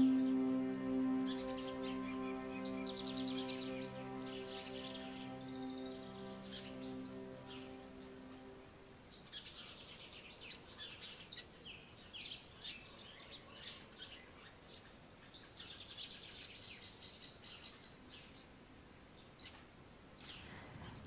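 Songbirds singing in repeated trills and chirps. A held music chord fades out under them over the first eight seconds or so.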